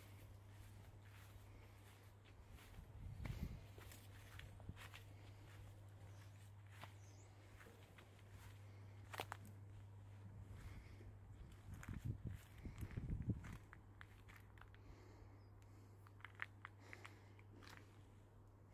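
Near silence: a faint steady low hum, with soft low thumps about three seconds in and again around twelve to thirteen seconds, and a few faint clicks.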